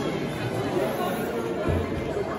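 Crowd of visitors talking at once, indistinct chatter with no single clear voice, and a brief low thump near the end.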